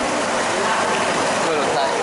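Hot-tub water churning and bubbling from the jets, a steady rushing hiss.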